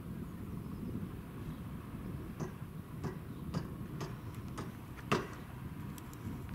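Wind on the microphone as a steady low rumble, with a series of sharp clicks from about halfway in, roughly two a second, the loudest one near the end.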